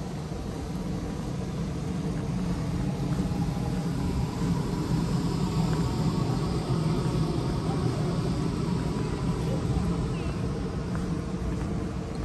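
A steady low mechanical rumble with a hum in it, growing a little louder over the first few seconds and then holding.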